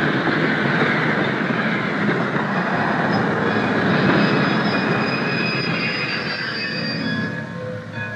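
Recorded train sound effect opening an old rhythm and blues record: a steady rumbling noise with high squealing tones over it, dying away near the end.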